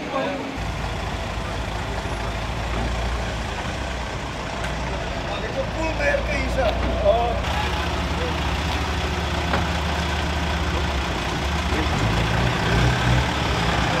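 A large vehicle's engine idling steadily with a low hum, with faint voices in the background.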